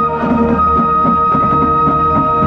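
Marching band playing, with a flute close by holding one long high note over the rest of the band and its percussion.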